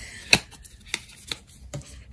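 Tarot cards being handled and laid down on a table: a few short, sharp card taps, the loudest about a third of a second in.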